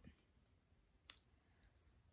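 Near silence with a faint click at the start and a sharper one about a second in: a chain necklace being handled.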